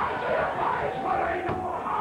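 A preacher shouting in long, held, sing-song phrases, with congregation voices and music behind him.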